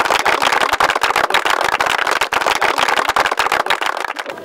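Large audience applauding, many hands clapping at once.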